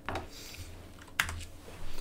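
Two clicks of a computer key about a second apart, as the lecture slide is advanced.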